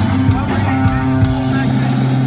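Live rock band playing an instrumental passage: electric guitar leading over bass and drums, loud and continuous.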